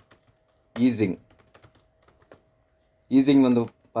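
Typing on a computer keyboard: a run of light, uneven key clicks through the first half or so, quieter than the voice.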